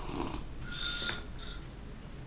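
Loud slurp of a hot drink sucked from a mug, a hissing intake of air with a thin whistle about a second in, followed by a second, shorter slurp.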